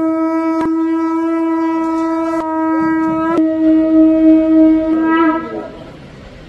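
Conch shells (shankha) blown in Hindu temple ritual, holding one long steady note that swells slightly, then wavers and dies away about five and a half seconds in.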